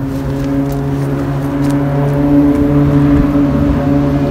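An engine running steadily, a low even hum at one pitch that grows a little louder over the few seconds.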